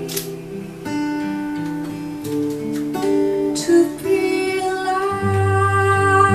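Acoustic guitar playing with a woman singing along in long held notes.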